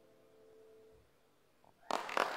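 The last long note of a violin and keyboard piece, held quietly and dying away about a second in. A moment of silence follows, then a sudden loud burst of noise near the end.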